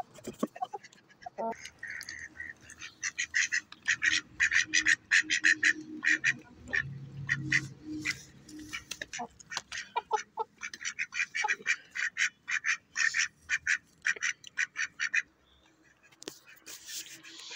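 A duck quacking in a long, rapid string of short calls, about four a second, that stops about a second before the end.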